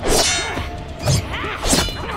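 Cartoon fight sound effects: a sharp metallic clang with a high ringing tail at the start, like a blade strike, followed by further hits about a second in and near the end.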